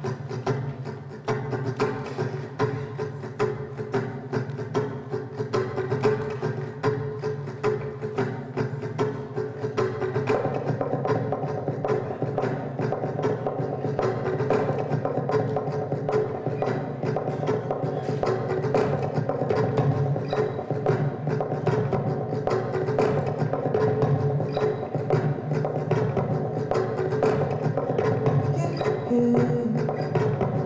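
Acoustic guitar run through a loop pedal: a short guitar phrase with sharp percussive taps repeats over and over while new parts are played on top. About ten seconds in another layer joins and the music grows fuller and louder.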